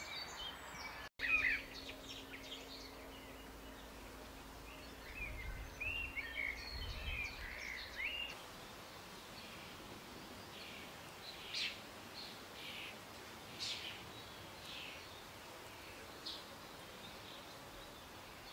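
Outdoor field ambience with wild birds calling. A burst of chirps comes just after a second in, a run of warbling notes between about five and eight seconds, then several short, high calls a second or two apart.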